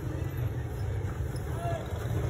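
Busy street noise: a steady low traffic rumble with faint voices of passers-by.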